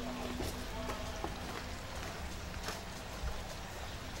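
Potting soil crumbling and rustling off a succulent's root ball as it is worked free of a small plastic nursery pot. A few faint crackles and taps sound over a low background rumble.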